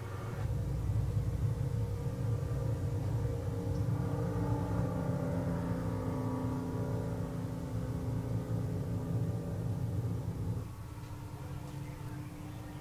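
Motorboat engine running steadily, a low rumble with a steady hum over it, heard from a TV soundtrack played through room loudspeakers. It becomes somewhat quieter near the end.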